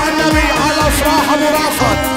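Dabke wedding music, loud and continuous: a long end-blown flute plays a fast, ornamented melody into a microphone over a steady drone and a regular low drum beat.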